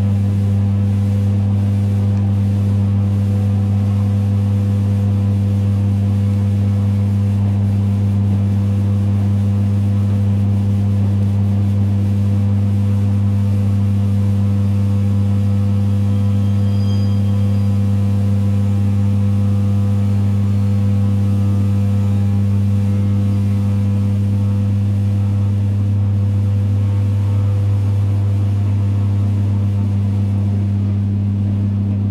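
Inside a moving ED9E electric multiple unit: a loud, steady low electric hum with a higher overtone, over the train's running noise.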